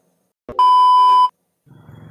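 A single loud, steady electronic beep, about three-quarters of a second long, starting about half a second in and cutting off abruptly: an edited-in sound-effect tone at the cut between clips.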